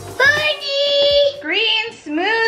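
A young girl singing: one long held high note, then a short rising note near the end.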